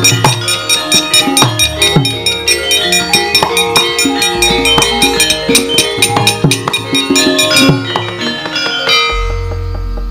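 Javanese gamelan playing: struck bronze metallophones and gongs ringing over a steady pulse of hand-drum strokes. The playing stops about eight seconds in and the metal ringing dies away.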